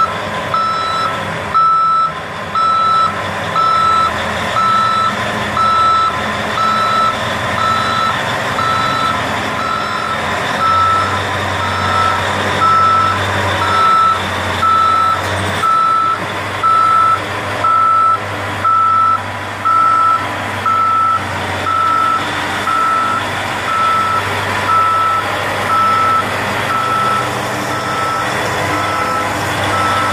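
Backup alarm of a Caterpillar 988B wheel loader beeping about once a second as it reverses under load, over its V8 diesel engine running. The beeps grow fainter near the end as the machine passes.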